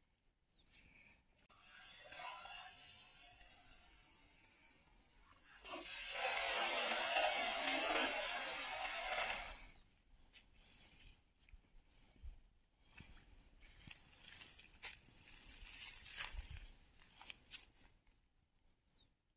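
Creek water splashing and sloshing as a cast net is thrown into the shallows and hauled back in, with the loudest stretch of splashing in the middle and scattered small splashes and clicks near the end.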